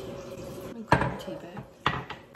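Kitchenware being handled: two sharp knocks about a second apart, from a plastic pitcher and a ceramic mug.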